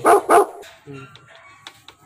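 A dog barking twice in quick succession, loud and short, right at the start, then only faint small sounds.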